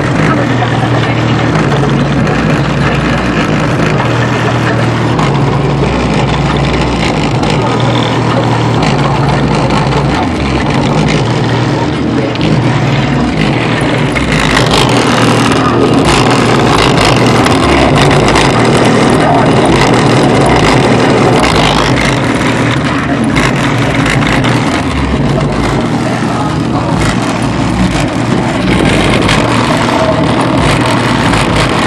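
Rap music played loud through a car audio system's two 12-inch Sony Xplod subwoofers on a 500-watt monoblock amp, heard from outside the car: heavy bass with the rapped vocals over it.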